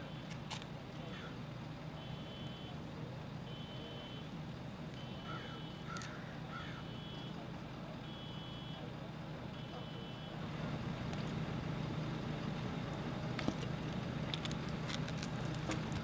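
A vehicle's reversing alarm beeping at an even pace, about one beep every second and a half, over a steady low engine rumble. The beeps stop about ten seconds in and the rumble grows a little louder.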